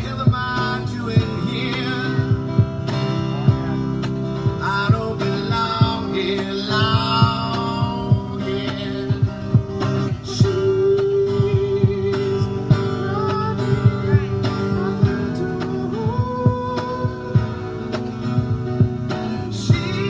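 Live music: a man singing and playing an electric guitar, with sharp picked attacks and some sliding, bent notes.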